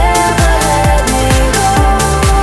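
Instrumental trance music: a steady four-on-the-floor kick drum, a little more than two beats a second, under sustained synth chords and a held synth lead.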